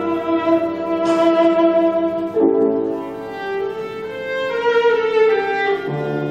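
Viola playing classical music with piano accompaniment: long bowed notes that move to a new pitch about two and a half seconds in and again near the end.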